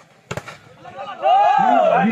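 A single sharp smack of a volleyball being spiked at the net, about a third of a second in, followed from just past halfway by loud shouting voices of players and spectators.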